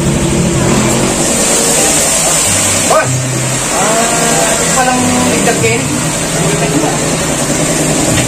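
A motor vehicle engine running steadily, with men's talk over it.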